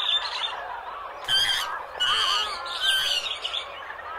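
Birds chirping and calling in a busy chorus of short rising and falling notes, with louder calls at about one and a half, two and three seconds in.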